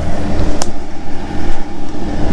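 2016 Bobcat Toolcat 5600's diesel engine running at a steady idle, a low even hum, with a single brief click about half a second in.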